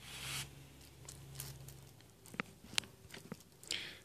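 Quiet handling sounds of a large survival knife and its leather sheath: a brief rustle at the start, then a few light clicks and taps.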